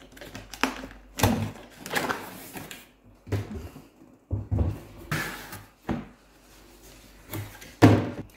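Product box being unpacked by hand: a series of irregular thumps, knocks and scuffing rustles as the packaging is opened and the contents are handled.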